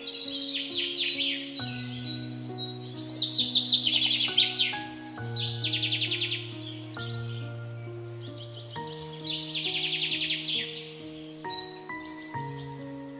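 Bird chirping in several bursts of rapid, high trilled notes, each lasting a second or two, over background music of slow sustained chords.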